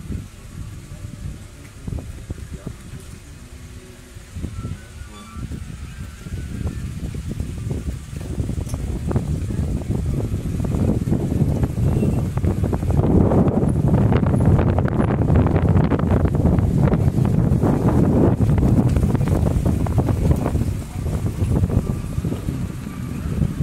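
Wind buffeting a phone's microphone: a low, gusty rumble that grows much louder from about eight seconds in.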